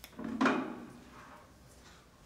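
A door being opened: a light click at the very start, then a louder knock and rub of the door about half a second in, which dies away within a second.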